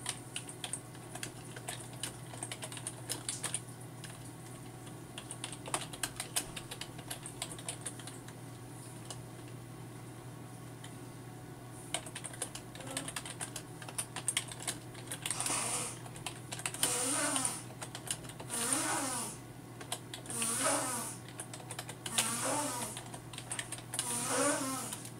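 Typing on a computer keyboard: quick, irregular key clicks. In the second half a person's voice makes five or six short wordless sounds over the typing, one every second or two, each rising and falling in pitch.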